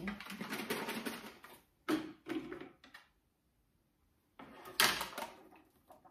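Handling noises as a small plastic pot of cream is picked up and handled: rustling and clicking in bursts, broken by about a second and a half of silence in the middle.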